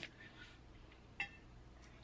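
Quiet room tone with a single short click a little past halfway.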